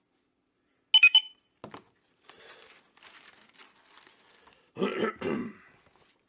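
A sharp, ringing triple clack about a second in, then faint rustling, then a man clearing his throat near the end.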